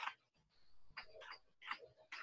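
Faint computer keyboard typing: a handful of short, irregular key clicks.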